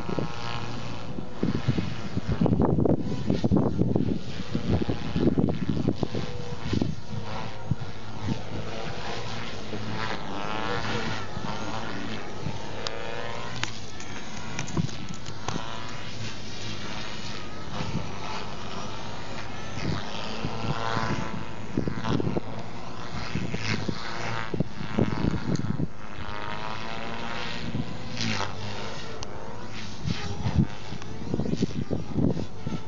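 Protos radio-controlled helicopter flying 3D aerobatics, its rotor and motor whine rising and falling in pitch with each manoeuvre. Wind buffets the microphone in gusts, most strongly a few seconds in.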